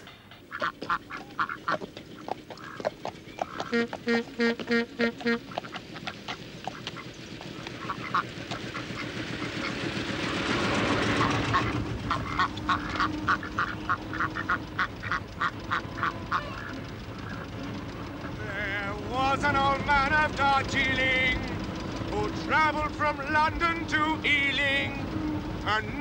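Domestic ducks quacking in short repeated runs. From about halfway through, an early motor car's engine runs underneath, and a man's voice comes in near the end.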